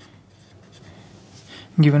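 Pen scratching faintly on paper as a word is written out by hand.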